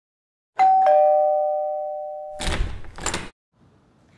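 Two-note ding-dong chime like a doorbell, a higher note then a lower one, ringing out and fading over about two seconds. It is followed by a short double rush of noise.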